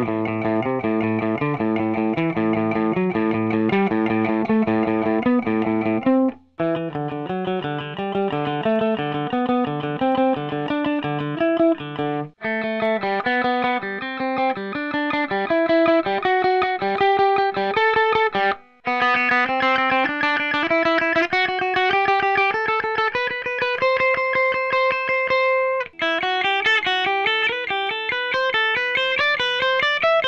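Electric guitar playing quick alternate-picked single-note runs of the A minor scale along one string, in four passages split by short breaks. The last passage climbs in overlapping sequences.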